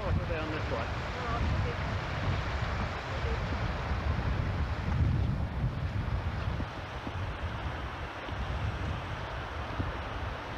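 Wind buffeting a camcorder microphone: a steady rumbling roar, with faint voices in the first couple of seconds.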